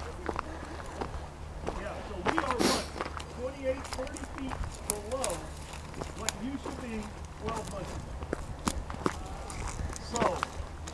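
Footsteps crunching irregularly on loose gravel and cobbles, with faint, distant voices of a group talking.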